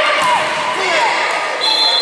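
Indoor futsal game sounds: shouting voices over the bounce and knock of the ball on the wooden court. Near the end a steady, shrill referee's whistle starts as a player goes down in a challenge.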